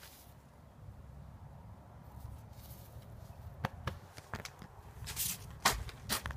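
Low rumbling handling noise from a phone held against cloth, with a few sharp clicks and rustles in the second half; the loudest rustle comes near the end.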